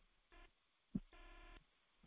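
Near silence in a pause in speech, broken by a soft low thump about a second in and faint brief tones either side of it.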